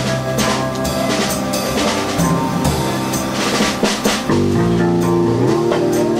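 Live band music: a drum kit keeping a steady beat and an electric bass line under held notes, with hand claps along with the beat.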